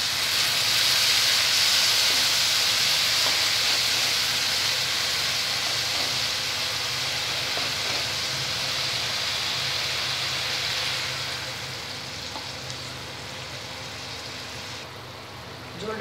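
Radish strips and spices frying in hot oil in a wok, a steady sizzling hiss that dies down about eleven seconds in.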